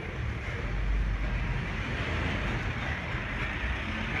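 Steady low rumble of a truck's engine running, with street noise around it.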